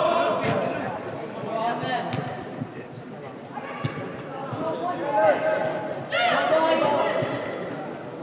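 Players' shouts in a large indoor sports hall during a football match, with several short thuds of the ball being kicked in between.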